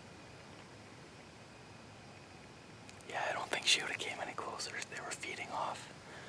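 A man whispering: a faint steady hiss for about the first three seconds, then low whispered speech for the rest.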